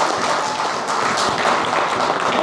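Audience applauding, a dense patter of many hands clapping, with some laughter.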